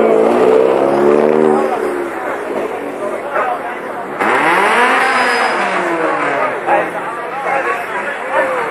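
Car engine revving among a crowd: engine noise in the first two seconds, then a sudden loud rev about four seconds in that climbs in pitch and falls back. Crowd voices throughout.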